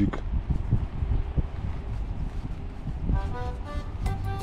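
Low, steady outdoor rumble with scattered soft knocks of handling close to the microphone; about three seconds in, background music with held notes begins.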